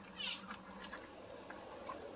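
A short, faint, high-pitched animal call about a quarter second in, followed by a few faint scattered clicks.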